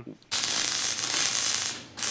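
Electric welding arc crackling in one steady run of about a second and a half, starting just after the beginning and cutting off just before the end.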